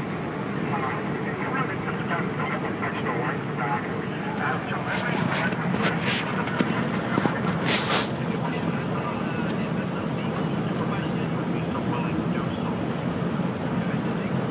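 Steady road and engine noise inside a moving car's cabin at highway speed, with some speech mixed in underneath and a few brief hisses around the middle.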